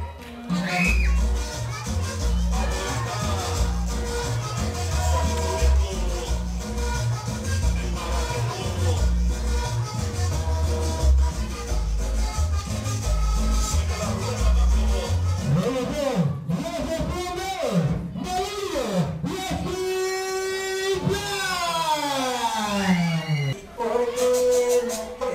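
Wrestlers' entrance music played loud, with a heavy bass beat. About two-thirds of the way through, the beat gives way to swooping tones, then a run of falling electronic tones near the end.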